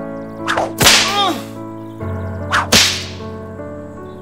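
A whip lashed twice, about two seconds apart: each lash is a quick swish ending in a sharp crack. Sustained music chords play underneath.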